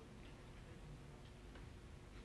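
Near silence: faint low hum and hiss.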